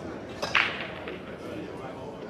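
A single sharp clack of billiard balls struck by a cue, about half a second in, ringing briefly, over the murmur of a hall crowd.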